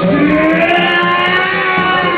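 Live electronic music: a theremin's gliding lead tone, sliding slowly in pitch, over a pulsing low bass line.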